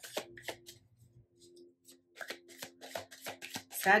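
A deck of oracle cards shuffled by hand: quick runs of soft clicks that stop for about a second, then start again.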